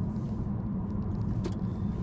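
Steady low road and tyre rumble inside the cabin of a moving 2013 Chevy Volt, with one brief click about one and a half seconds in.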